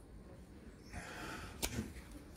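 Faint handling of a pin-type moisture meter against a plaster wall: a brief soft hiss about halfway through, then a single sharp click.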